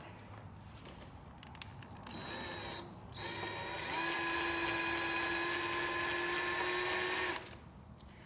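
Handheld drill running, spinning a 3/8-inch rod against a bandsaw wheel to roll a new urethane tire into its groove. The motor whines briefly about two seconds in, pauses a moment, then runs steadily for about four seconds before stopping.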